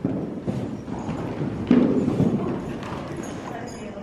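Horses' hooves moving over the sand footing of an indoor riding arena, one horse passing close by; the sound starts suddenly and runs as a rough, uneven stream of hoofbeats.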